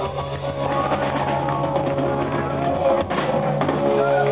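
Rock band playing live, with a drum kit and electric guitars: held guitar notes under steady drum hits.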